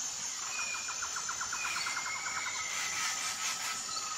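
Wild birds singing over a steady high insect drone: a rapid trill of about ten notes a second for roughly two seconds, then long whistled notes that glide slowly downward.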